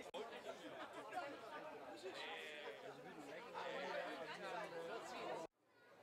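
Background chatter of many people talking at once around café tables, fairly quiet, cutting off abruptly near the end.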